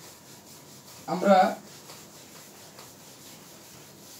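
A whiteboard eraser wiping marker off a whiteboard in quiet, repeated rubbing strokes.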